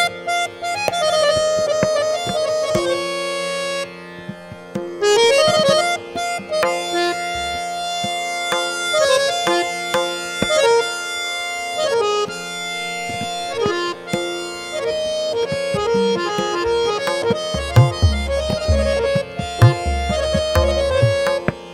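Harmonium (samvadini) playing quick melodic runs that climb and fall over a steady held drone note, accompanied by tabla. Deep bass strokes of the tabla's larger drum come in strongly near the end.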